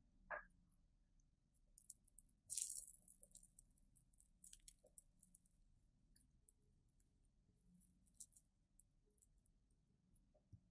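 Faint crackling and sizzling of flux boiling off as a soldering iron heats copper solder wick on a circuit-board pad, drawing up the old solder. The crackle is densest about two to three seconds in, then thins to scattered ticks.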